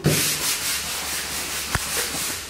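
Push broom bristles sweeping across a bare concrete floor: a steady scratchy brushing, with a knock at the start and a sharp click near the end.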